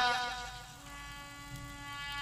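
The last spoken word fades out at the start, leaving a faint, steady held musical note with many overtones.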